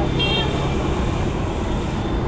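Street traffic noise: a steady rumble of passing vehicles, with a short high-pitched toot near the start.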